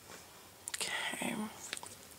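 A person's soft whisper, under a second long, starting about half a second in, with a few faint clicks around it.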